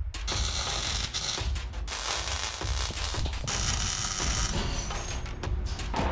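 Electric arc welding: the arc crackles and sizzles in three beads of about a second and a half each, tacking angle-iron braces under a steel table.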